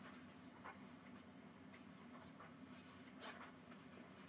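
Near silence: faint room tone with a few soft, brief rustles or taps, the clearest about a second in and near the end, from handling things at a desk.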